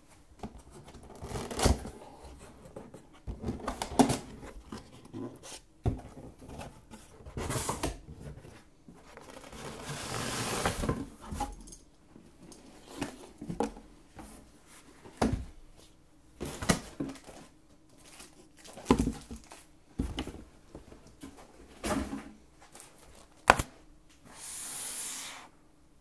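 A cardboard helmet box being opened by hand: flaps and inner cardboard inserts bent back and pulled out, with scraping, rustling and a string of sharp knocks. A longer scraping rush comes about ten seconds in, and a short hiss near the end as the bagged helmet comes out.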